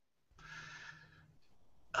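A short, faint breathy exhale into a headset microphone, lasting about half a second, a little after the start.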